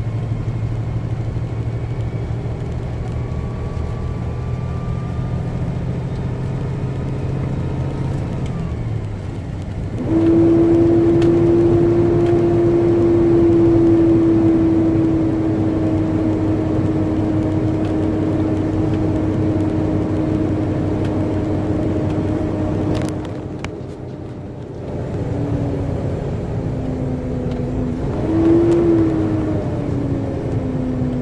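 Diesel engine of a Peterbilt semi truck heard from inside the cab while driving. It runs with a low steady hum at first; about ten seconds in its note jumps higher and holds, slowly sinking in pitch. Later it dips briefly, then comes back with a wavering pitch near the end.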